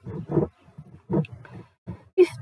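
An indistinct, low person's voice in a few short bursts, with quiet gaps between them.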